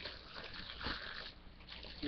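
Faint rustling and crinkling of thin clear plastic wrap being handled, with a couple of soft knocks.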